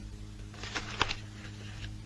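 Newspaper pages rustling and crackling as they are handled, with a cluster of crisp crackles about a second in, over a faint steady low hum.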